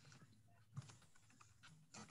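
Faint typing on a computer keyboard: scattered soft key clicks over a low steady hum.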